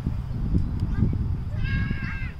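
Wind rumbling on the microphone across an open field. About one and a half seconds in comes a single drawn-out high call, held level and then bending at its end.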